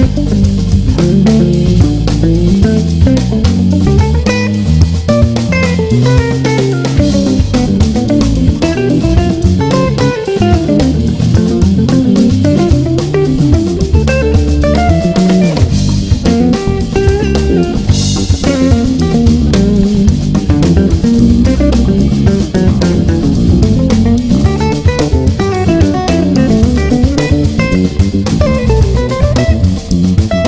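Electric guitar played through a 1960 EkoSuper amplifier, an AC30-type amp built by Eko for Vox, with melodic lines over a backing track of bass and drums. A cymbal crash comes a little past halfway.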